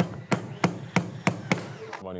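Hammer blows in a steady rhythm, about three strikes a second, as a set panel is fixed in place.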